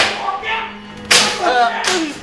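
Sharp cracking hits, one right at the start and another about a second in, with a smaller one near the end. Short vocal sounds come in between.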